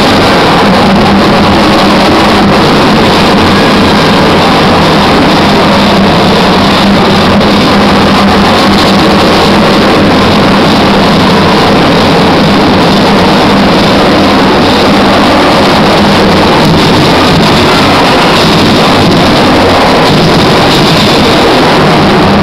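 A loud, steady engine drone with a constant low hum and a dense noisy rush over it, unchanging throughout.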